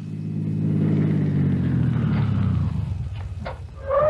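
Radio-drama sound effect of a car driving up and slowing to a stop, its engine note steady at first, then falling in pitch and fading out. A couple of light clicks come just after it.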